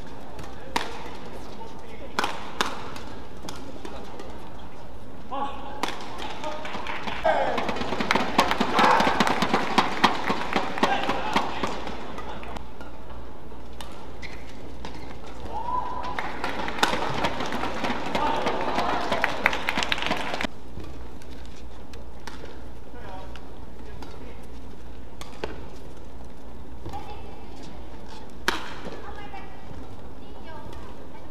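Sharp cracks of racket strikes on a shuttlecock during a badminton rally. Two spells of arena crowd cheering and shouting, each a few seconds long, follow points won. Near the end comes another single racket strike.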